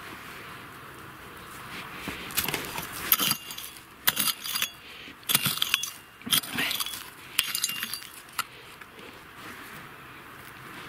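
Digging in loose, stony soil with a small hand hoe and gloved hands: a run of short scrapes with stones clicking and clinking against each other and the metal blade, starting about two seconds in and stopping near the end.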